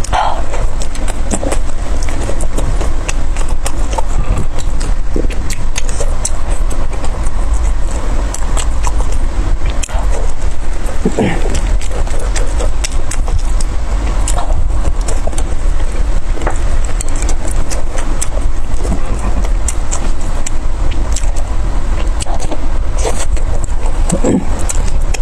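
Close-miked chewing and wet mouth smacks of a person eating soft steamed buns, with many short clicks scattered throughout, over a steady low rumble.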